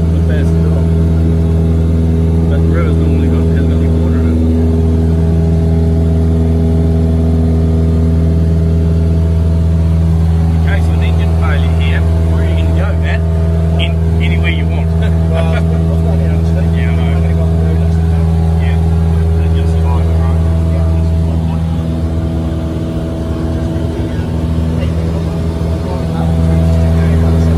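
Piston engine and propeller of a high-wing single-engine light aircraft droning steadily in cruise, heard from inside the cabin. The drone eases slightly for a few seconds near the end, then picks up again.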